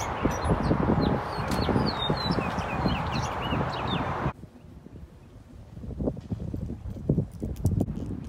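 A flock of small birds chirping in bare trees: many short, high calls over a dense steady background. About four seconds in the sound cuts off abruptly, leaving quieter low knocks and thumps.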